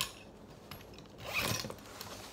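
Pencil case zipper being pulled: a sharp click at the start, then one short zip about a second and a half in.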